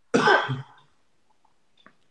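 A man clears his throat once, a short rough burst of about half a second.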